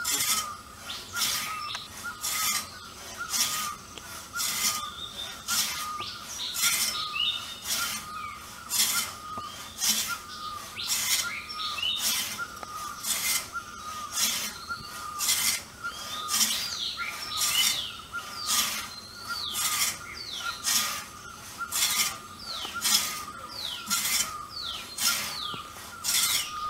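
Two-man frame saw ripping a squared hardwood log lengthwise into planks, with steady rasping strokes about two a second. Birds chirp throughout.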